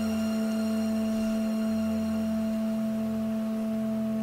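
Steady meditation drone in the background: a low sustained tone with several higher tones layered over it, held unchanging without fading.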